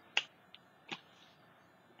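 Two sharp plastic clicks about three-quarters of a second apart, the first the louder, as a white paint marker is handled and set down on the tabletop.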